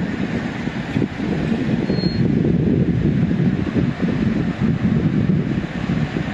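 Wind buffeting the microphone: a steady low rumble that rises and falls without a break.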